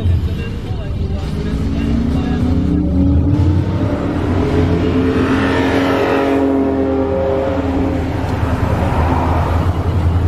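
Gray Dodge Charger's engine revving as it accelerates past, its pitch climbing for a few seconds and loudest about five to six seconds in before fading away. A steady low drone of other cars' engines running continues underneath.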